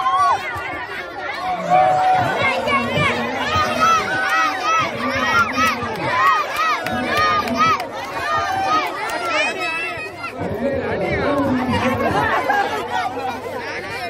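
Crowd of many voices talking and calling out over each other, with raised shouts cutting through the chatter.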